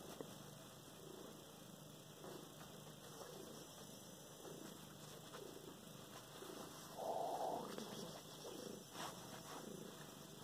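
Domestic cat purring faintly under a bedsheet, with a brief louder sound about seven seconds in.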